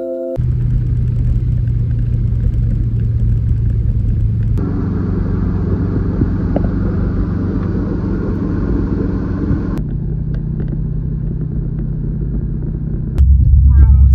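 Subaru WRX STI's turbocharged flat-four engine and road noise heard from inside the car while cruising: a steady low drone that shifts in tone about a third and two-thirds of the way through, and gets louder near the end.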